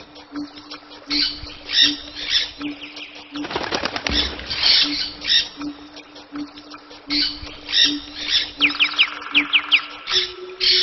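Birds chirping amid repeated rustling bursts, with a quick run of about six falling chirps near the end. Under it a low tone pulses about twice a second.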